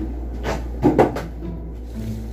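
Three short knocks close together, about half a second to a second in, from someone settling at a kitchen table with a plate of food, over a steady low hum.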